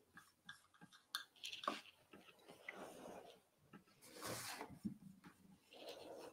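Faint, irregular scrapes and light clicks of a metal palette knife working thick paint on a canvas, with a brief louder scrape about four seconds in.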